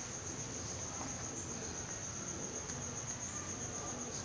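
A faint, steady, high-pitched pulsing tone, like an insect trill, over low room noise, with a couple of tiny soft ticks.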